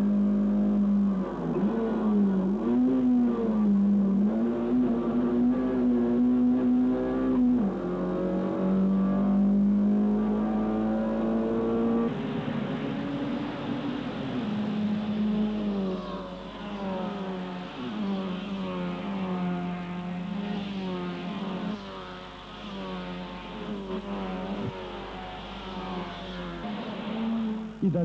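Small-displacement race car engine at full throttle, heard from inside the car. Its note climbs and drops sharply as it shifts gears. About halfway through, the sound changes to several race cars driving hard past the trackside.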